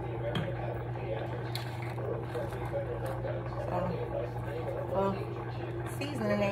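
Steady low electrical hum from a kitchen appliance motor, with a faint murmur of speech now and then.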